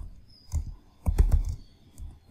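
Typing on a computer keyboard: a couple of separate keystrokes, then a quick run of keys about a second in.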